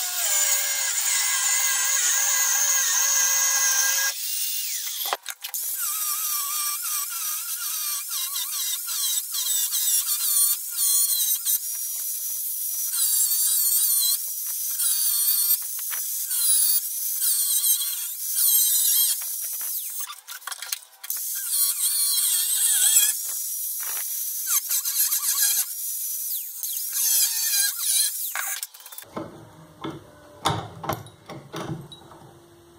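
Angle grinder with an abrasive disc cutting into a clamped steel plate. It gives a steady high whine for the first few seconds, then a rougher, wavering screech as the disc bites the metal, and stops just before the end.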